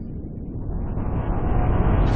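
Rumbling sound-effect riser for an animated logo intro: a low noisy swell that grows steadily louder and brighter, building toward a burst.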